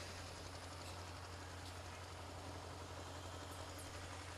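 A pause in the talk with only a faint, steady low hum and light background hiss, typical of an amplified public-address system left open between words.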